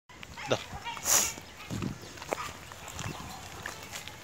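Dog on a leash making short vocal sounds, with a loud hissing noise about a second in.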